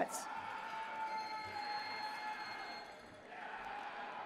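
Quiet room sound of a large hall between announcements: a faint audience murmur with a few faint steady tones, easing off near the end.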